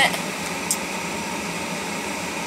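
Steady hum and hiss inside a running car's cabin, with one short click about two-thirds of a second in.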